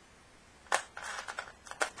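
Small craft supplies being handled and set down on a work table: a sharp click about three-quarters of a second in, then a run of light clicks and rustling, with another sharp click near the end.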